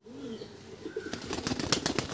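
Pigeons at a wire cage: a short low coo near the start, then from about a second in a quick run of wing flaps and clattering on the wire cage top.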